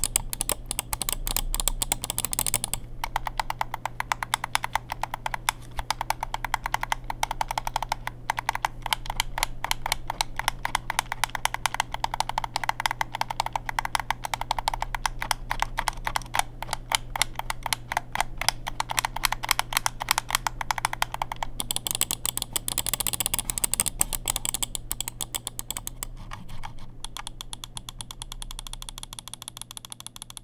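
Delux M800 gaming mouse buttons with Kailh GM microswitches being clicked rapidly and continuously, many sharp clicks a second. The clicking grows quieter over the last few seconds.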